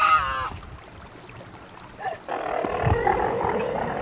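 A small child's voice: a short, high-pitched squeal right at the start, then, a little past halfway, a longer rough, noisy cry.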